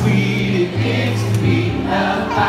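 Live pop song: a male vocalist singing into a microphone over held electric keyboard chords, with several voices singing together.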